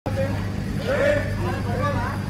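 People's voices talking indistinctly over a steady low hum.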